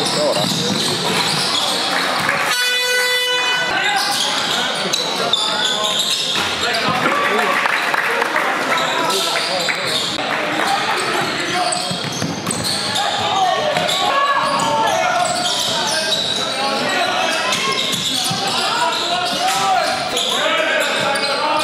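Live basketball game sound in a large indoor hall: the ball bouncing and players' and spectators' voices throughout. A scoreboard buzzer sounds once, for just over a second, about two and a half seconds in.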